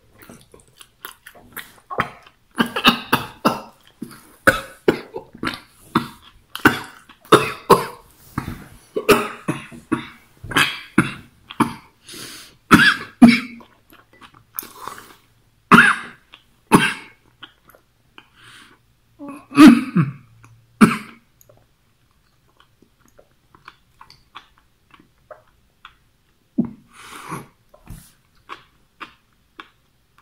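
A man coughing and clearing his throat over and over into his fist, a sharp reaction to a mouthful of sushi heaped with wasabi whose vapours go up his nose. The coughs come thick and fast for the first twenty seconds or so, then die away to a few faint sounds near the end.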